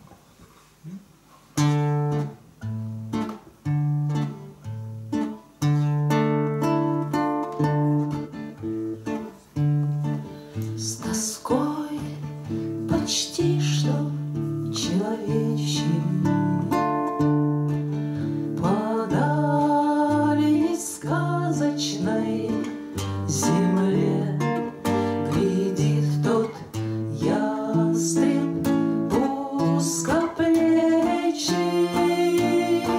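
Two acoustic guitars playing a song's introduction, beginning about a second and a half in. About a third of the way through, a woman's singing voice joins over the guitars.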